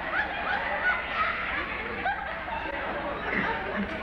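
Laughter mixed with speech from a live comedy stage play, with a run of short rising laughs in the first second and a half.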